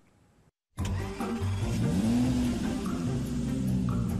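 After a brief silence, a car engine sound effect with music: the engine revs up, rising in pitch about two seconds in, then runs steadily.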